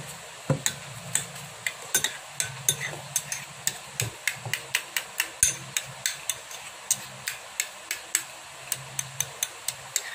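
A metal spoon clinking repeatedly against a ceramic bowl while stirring and mashing soft cereal mash, in sharp irregular taps of about three a second.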